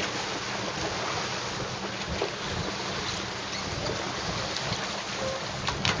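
Steady wind rushing over the microphone and choppy water washing around a motorboat, with a low steady engine hum underneath.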